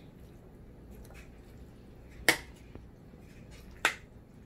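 Two sharp clinks, about a second and a half apart, of a metal fork knocking against a glass mixing bowl as noodle salad is tossed and served; the rest is quiet room tone.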